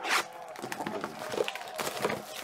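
Plastic shrink wrap on a trading-card box being slit with a box cutter, then torn and crinkled as it is pulled away. There is a sharp zipper-like rasp just at the start, scratchy tearing through the middle, and another rasp near the end.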